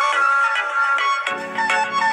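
Background music: a bright melody of quick, short notes.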